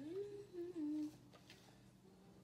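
A woman hums a short wordless phrase of a few notes, rising and then stepping down, lasting about a second.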